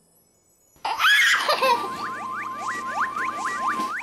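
A baby laughing, starting about a second in. Then comes a run of quick rising boing-like cartoon sound effects, about four a second, over a steady held tone.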